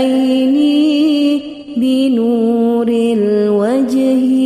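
Arabic devotional sholawat being chanted: a voice draws out long, ornamented notes that waver and step down in pitch, with a short break for breath about a second and a half in.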